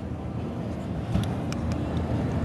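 Steady low rumble of a large, busy exhibition hall, with a few faint clicks and knocks from the camera being handled.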